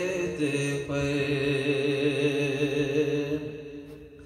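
A man's voice chanting an Urdu devotional kalam without instruments, holding one long steady note that fades away near the end.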